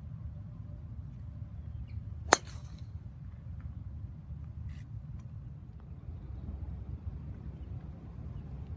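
Golf club striking a ball off the tee: one sharp crack about two seconds in, over a steady low rumble.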